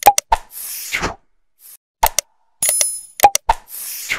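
Sound effects of an animated like-and-subscribe graphic: sharp clicks, a bright ringing bell chime, and a whoosh, in a pattern that repeats about every three seconds.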